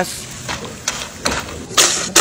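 Tortilla pieces frying in hot oil: a steady sizzle with small crackles, with a louder burst of noise near the end.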